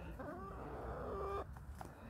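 A small flock of hens clucking quietly as they feed, the calls fading after about a second and a half.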